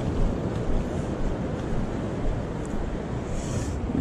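Wind buffeting the microphone over the steady wash of shallow surf running up flat, wet sand.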